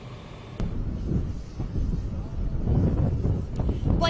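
Wind buffeting an outdoor microphone as a low, rough rumble. It cuts in suddenly with a click about half a second in, after faint hiss.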